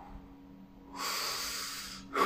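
A man's single heavy breath into a close microphone, about a second in and lasting nearly a second, taken between shouted phrases of preaching.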